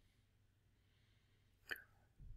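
Near silence, with one short, soft click near the end.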